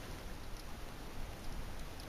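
Underwater ambient noise: a low, steady hiss with no distinct events.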